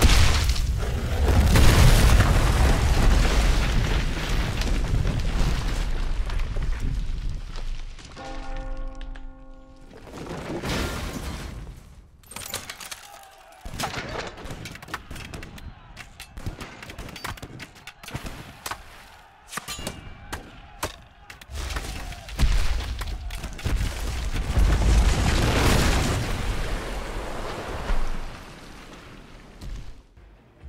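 Soundtrack of a computer-animated short film: deep rumbling booms and crashes with music, as a giant made of boulders moves. Scattered sharp knocks come through the middle, a short held note sounds about eight seconds in, and it dies down near the end.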